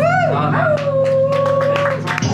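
A howl-like call that rises and falls, swoops again and then holds one steady pitch. It sits over a steady low electronic drone, with a few scattered clicks, as part of a live ambient electronic set.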